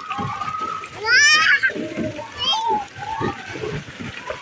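Water splashing in a shallow pool as a small child slides off a water slide into it and children play in the water. Children's voices over it, loudest a high squeal about a second in, with a shorter high call a little later.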